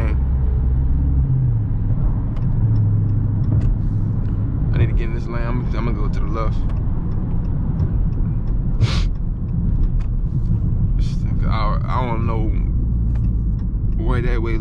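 The 6.4-litre 392 HEMI V8 of a 2020 Dodge Charger Scat Pack drones inside the cabin at highway cruise. Its low tone climbs a little about a second in and settles lower near the end, with no hard acceleration.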